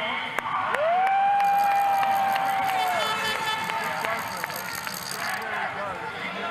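A man's voice over the arena loudspeakers stretching one word into a long call: it slides up, holds one note for about two seconds, then falls away. Crowd noise runs underneath.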